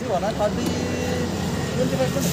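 Steady low hum of a motor vehicle engine running close by, with brief background voices.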